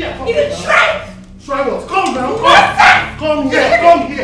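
Loud, angry shouting: a voice yelling in about four short, forceful outbursts in quick succession, with no clear words.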